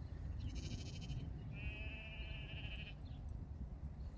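A sheep bleats once, a wavering call of about a second and a half, shortly after a briefer, higher fluttering call. A steady low rumble lies under both.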